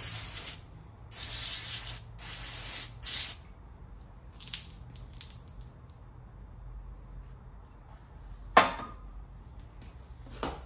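Aerosol brake cleaner sprayed through its straw nozzle onto small-engine carburetor and air-filter parts, in short hissing bursts over the first three seconds, then a few fainter hisses. A single sharp knock near the end.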